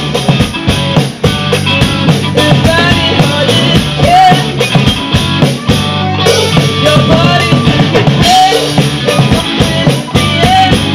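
Rock band playing live: a drum kit keeps a steady beat under electric guitar and bass.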